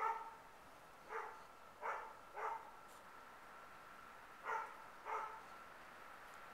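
An animal giving six short, separate calls, the first the loudest, over a faint steady high tone.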